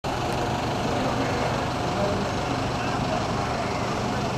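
Steady street noise with a motor vehicle engine running, over a faint murmur of voices.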